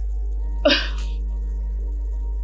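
A woman gives one short, sharp cough-like vocal burst about half a second in, over a steady drone of background music with a low hum.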